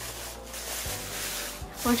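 A soft, even rubbing and rustling close to the microphone.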